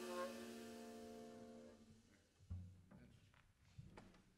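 A jazz quintet's last chord ringing out and fading away over about two seconds, ending the tune. A dull low thump follows, then a few faint clicks.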